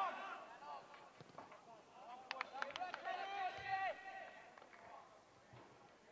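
Men's voices shouting calls in the open, in two bursts: briefly at the start and again for over a second around the middle, with a few sharp knocks as the second burst begins.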